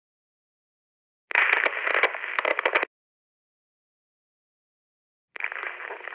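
Crackling static bursts, like a two-way radio: about a second and a half of crackle that stops suddenly, then silence, then a second short burst near the end as a transmission opens.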